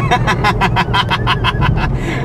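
A rapid run of laughter, about seven pulses a second, over the steady low drone of a 2010 Shelby GT500's supercharged V8, heard from inside the cabin.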